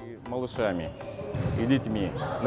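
A man's voice speaking, with a football thudding and bouncing on the artificial turf of an indoor football hall.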